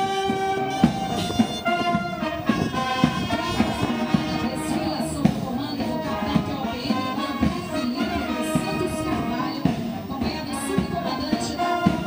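Military police marching band playing a march while parading, with trombones, saxophones and other brass and wind instruments holding sustained notes over short, sharp drum beats.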